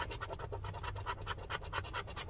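A coin scraping the latex coating off a scratch-off lottery ticket in quick, even strokes.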